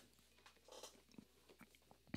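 Near silence: room tone with a low hum and a few tiny faint clicks.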